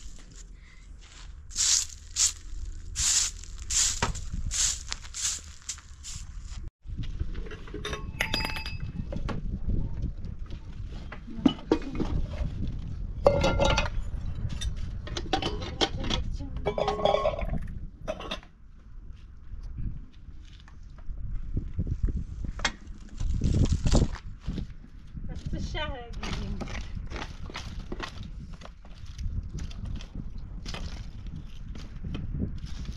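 Broom strokes scraping hard, dry earth, about two a second, for the first few seconds. After a sudden break come scattered clinks and knocks of pots and dishes.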